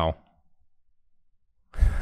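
A man's sigh close on the microphone near the end, after about a second and a half of near silence, running straight into speech.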